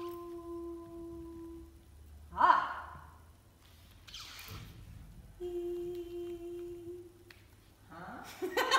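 Voices sounding vowels in turn: a steady held vowel, then a short loud exclaimed vowel that falls in pitch about two and a half seconds in, a breathy whispered sound, and another steady held vowel near the end.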